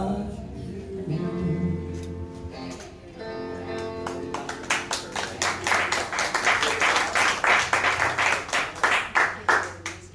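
Live country band playing an instrumental passage: held guitar and bass notes, then a fast, even strummed guitar rhythm about halfway through that stops abruptly near the end.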